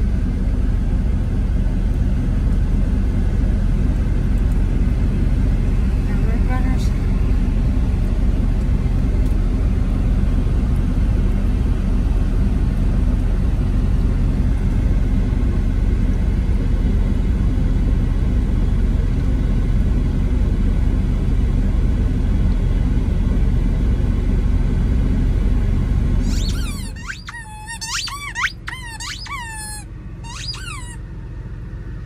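Steady low rumble of a Freightliner Cascadia semi truck driving down the highway, heard inside the cab. About 27 seconds in it cuts off, and a dog's squeaky plush toy gives a quick run of high squeaks as the dog chews it.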